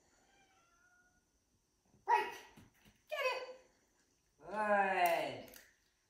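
Three drawn-out voiced calls, each falling in pitch, the last about a second and a half long.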